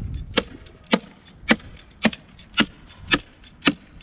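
Hammer tacker striking, driving staples through plastic sheeting into a wooden frame board: seven sharp strikes at a steady pace of about two a second.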